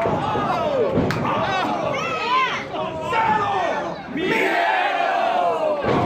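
Wrestling crowd yelling and cheering, many voices shouting over one another, with a single sharp smack about a second in.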